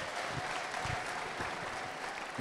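Congregation applauding in a large hall, a steady wash of many hands clapping.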